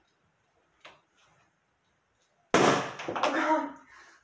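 A latex balloon pierced with a thumbtack pops with a single sharp bang about two and a half seconds in, followed at once by a short vocal exclamation.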